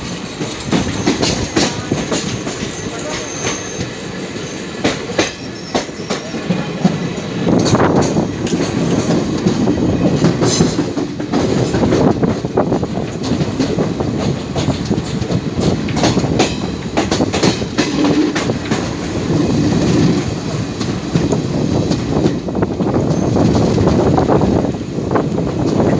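Passenger train running along the track: a steady rumble of coach wheels on rails with many short clicks over the rail joints. It gets louder about eight seconds in.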